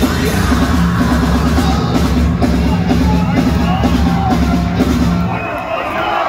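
Industrial metal band playing live at full volume: heavy drums with yelled vocals over a dense wall of sound, heard from within the crowd. The sound thins a little near the end.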